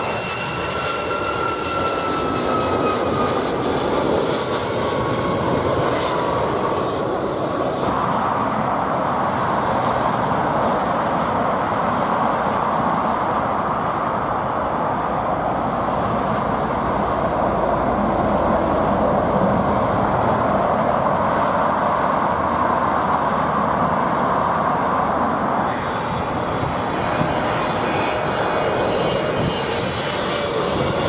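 Jet airliner engines passing low overhead on landing approach, the first a Boeing 757: a steady rushing engine noise with whining tones that slide down in pitch over the first several seconds as it goes by. The noise carries on through the rest, changing character about 8 seconds in and again near the end.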